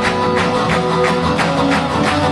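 Live acoustic band music: several acoustic guitars strummed in a steady rhythm, about four strums a second.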